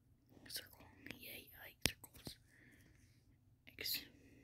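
Faint whispered speech, too quiet for words to be made out, with one sharp click a little under two seconds in.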